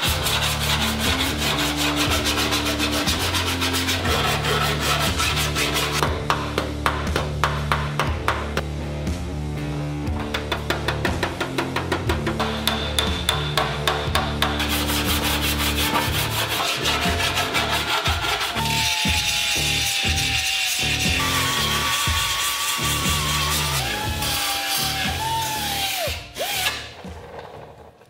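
Hand file rasping over a bare-metal car body panel in repeated strokes, filing down high spots to bring back the swage line, over background music with a steady bass line.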